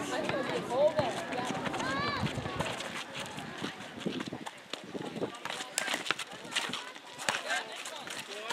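Netball players shouting calls to each other during play, mostly in the first couple of seconds, then quick footfalls and shoe scuffs on the asphalt court as they run.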